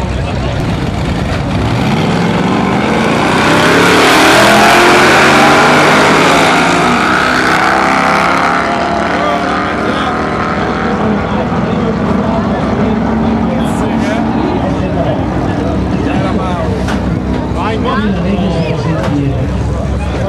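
Two drag-racing cars launching off the line and accelerating hard down the strip, their engines revving up through the gears. The engines are loudest a few seconds in, then fade as the cars pull away.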